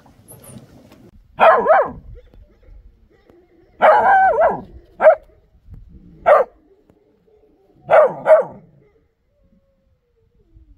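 Kangal puppy barking: about six loud barks spread over several seconds, one of them longer and drawn out, the last two close together.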